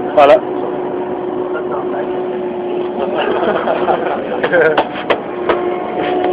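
A steady, unbroken hum under faint background voices, with a few sharp clicks near the end.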